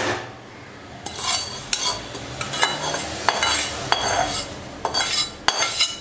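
Metal slotted spatula working thin poha and its tempering in a kadhai: repeated sharp clinks and scrapes of metal on the pan, spread through several seconds, over a light rustle from the stirring.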